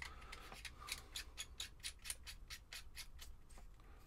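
Metal screw-threaded battery cap of a box mod being screwed down by hand: a faint rapid run of small clicks and scrapes from the threads, about five a second.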